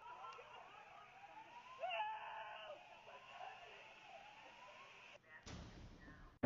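Faint, overlapping wailing alarms in the aftermath of a car-bomb explosion, their tones rising and falling in pitch, with a louder rising wail about two seconds in. A short burst of noise comes near the end.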